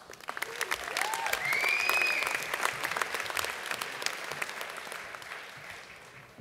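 Audience applauding, swelling over the first two seconds and then fading away, with a brief cheer over it in the first two seconds.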